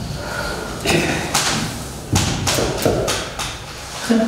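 About half a dozen sharp knocks and thumps in the last three seconds, with indistinct voices between them.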